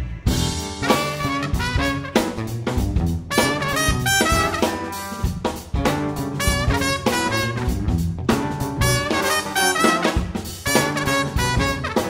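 Live band playing an upbeat instrumental: trumpet, trombone and saxophone horn section playing phrases together over a drum kit and electric bass.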